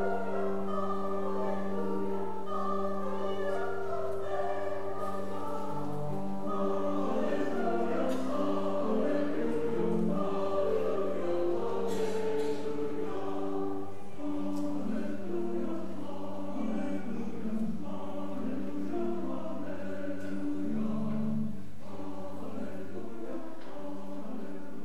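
Choir singing a sacred anthem with instrumental accompaniment, over a long held low note that stops near the end.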